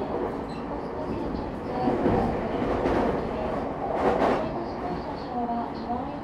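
Running noise heard inside the motor car of a JR E217-series electric commuter train under way: a continuous rumble of wheels on rails and car body. It swells louder twice in the middle.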